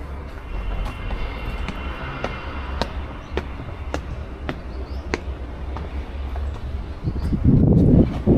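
Footsteps on stone paving at a walking pace, about two a second, over a steady low rumble. The rumble swells louder near the end.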